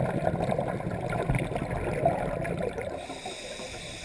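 Water gurgling and sloshing close to the microphone, growing quieter over the last second, with a faint hiss coming in near the end.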